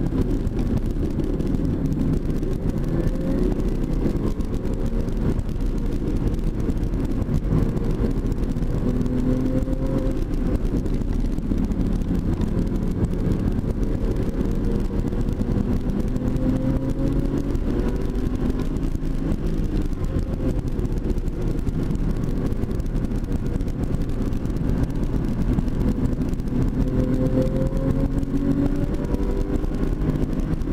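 Porsche 996 Carrera 2's flat-six engine at track speed, heard from inside the cabin. Its note climbs under throttle and drops back several times, over steady road and wind noise, and it rises again near the end as the car accelerates.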